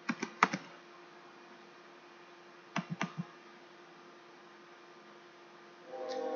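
Computer keyboard keystrokes in two short bursts: about five keys right at the start and four more about three seconds in, over a faint steady hum.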